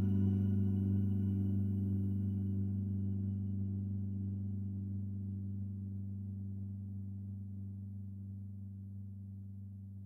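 A low synthesizer note ringing on with its overtones and fading slowly and evenly, the long release tail of a sustained note.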